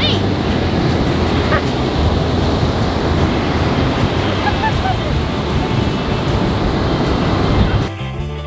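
Ocean surf breaking, with wind buffeting the microphone: a steady rushing noise.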